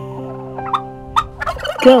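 Helmeted guineafowl giving a few short, sharp calls over soft background music with long held notes.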